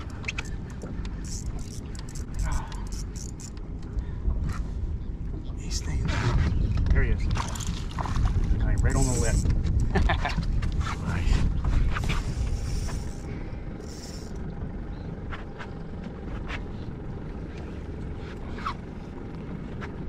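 Wind on the microphone over open water, swelling for several seconds in the middle, with scattered sharp clicks from a spinning reel being cranked against a hooked false albacore.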